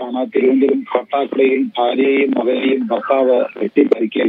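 A man speaking steadily over a telephone line, his voice thin and narrow.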